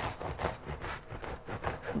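Bread knife sawing back and forth through the hard, crusty crust of a freshly baked sourdough loaf: a rasping scrape with each stroke, about three to four strokes a second.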